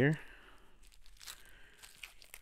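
Faint crinkling and tearing of plastic shrink-wrap as fingers pick it open on a CD set, with a few small crackles in the second half.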